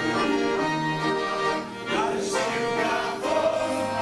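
Three piano accordions playing a hymn, with a group of men singing together over them; the voices come in strongly about halfway through, after a brief dip.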